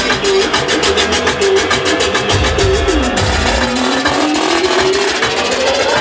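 Live DJ set played loud through a club sound system. A fast, even hi-hat-like roll runs through the first half and stops about halfway. A tone then dips and slowly climbs in pitch over the second half, like a build-up.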